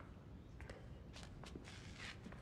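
A few quiet footsteps on a stone floor, unevenly spaced.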